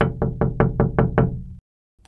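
Knocking on a front door: a quick, even run of about eight knocks that stops about a second and a half in.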